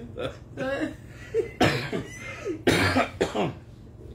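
A person coughing, two loud coughs about a second apart, after a moment of laughing and voice sounds.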